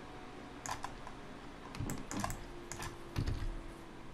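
Several scattered keystrokes on a computer keyboard, short clicks with pauses between them, as Blender shortcut keys are pressed.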